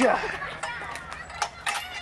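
A man's voice calling out "I had gotcha", followed by a few short sharp clicks.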